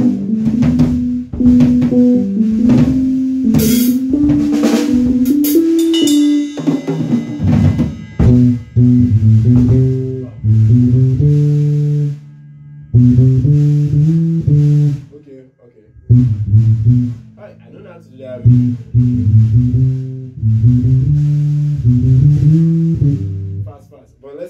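A band playing live in a small room: electric bass guitar walking through a line of low stepped notes over a drum kit with snare, with cymbal crashes in the first few seconds. The playing breaks off briefly twice in the middle and starts up again.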